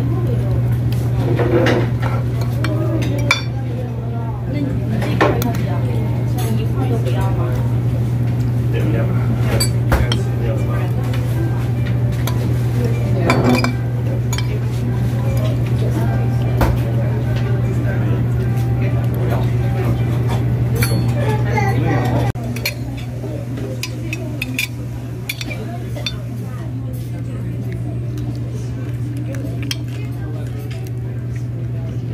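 Metal fork and spoon clinking and scraping against a ceramic plate during a meal, in many short sharp clicks. Under them runs a steady low hum that becomes quieter about two-thirds of the way through, with voices in the background.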